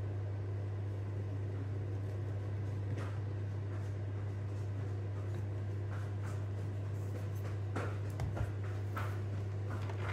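A steady low electrical hum, with a few faint light taps.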